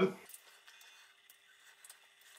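Near silence with a few faint clicks from small pruning snips handled among the bonsai's branches, after the tail of a spoken word at the very start.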